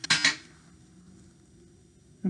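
A brief rasping rip of adhesive tape being pulled off its roll and torn, right at the start.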